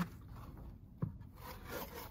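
Cardboard box being handled: faint rubbing and scraping of cardboard, with one sharp tap about a second in.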